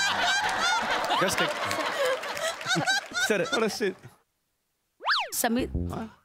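Laughter from the studio audience and judges for about four seconds, cutting off suddenly. After a short silence, a comic sound effect sweeps quickly up and back down in pitch, followed by a brief voice.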